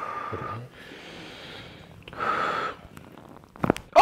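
A man's deep breaths with a faint whistle in them as he breathes out and in on instruction; near the end a quick few cracks as his spine is manipulated in a standing lift, the joints popping.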